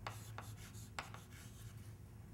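Chalk writing on a blackboard: faint taps and scrapes as letters are chalked, with the sharpest tap about a second in.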